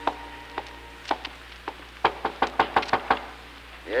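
Sound-effect knocking on a wooden door: a quick run of about eight raps about two seconds in, after a few spaced footsteps.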